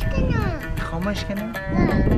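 A small child's high voice talking, rising and falling in pitch, over background music with a steady beat.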